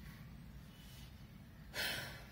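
A person taking a short, sharp breath in, near the end, after a pause with only faint room noise.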